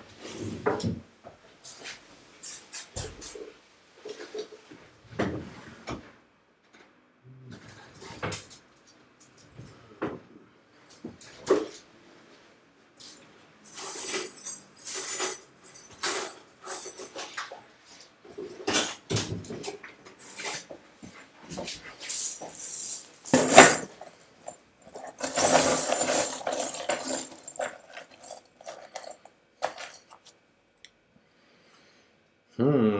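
Scattered knocks, clicks and clatter of objects being handled and searched through in a workshop. One sharp knock comes a little before the 24-second mark, and a longer rattling clatter follows about a second later.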